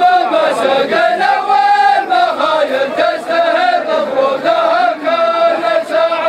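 Male chanting of an Arabic poem in a drawn-out melody, with long held notes that rise and fall, going on without a break.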